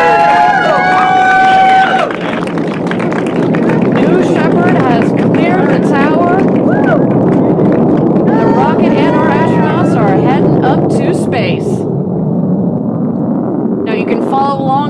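Onlookers cheering and whooping over the steady rumble of a New Shepard rocket's BE-3 engine during liftoff and climb. Sustained shouts for the first two seconds, then a dense rumble with scattered short whoops.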